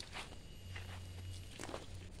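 Faint, irregular footsteps on bare soil, a few steps over a low steady hum.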